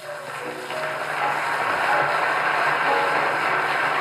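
Audience applauding after the singer is introduced, swelling in over the first second and then holding steady, on an old, crackly radio recording.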